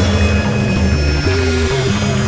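Experimental electronic synthesizer music: a low, droning synth line stepping between pitches about every half second, over a noisy haze with thin steady high tones above.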